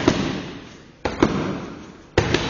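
Boxing gloves smacking into focus mitts: two sharp punches about a second apart, each ringing on briefly in a large echoing gym.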